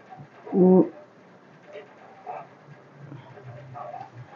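A woman's short closed-mouth "hmm" about half a second in, then only faint low background sounds.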